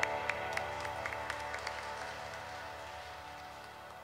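The last held chord of a church hymn dying away in a reverberant church, with scattered hand claps from the congregation, about three or four a second, thinning out as the sound fades.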